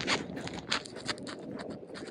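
Quick, irregular scratchy rustling of clothing and the handheld phone rubbing near the microphone while walking, several small ticks a second, with footsteps on paving underneath.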